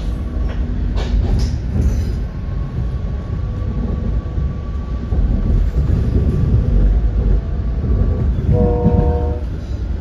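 Metra Highliner electric multiple unit heard from inside the passenger car as it rolls along: a steady low rumble of wheels on track, with a few sharp clacks over rail joints in the first two seconds. Near the end a short horn sounds, a chord of several tones lasting under a second.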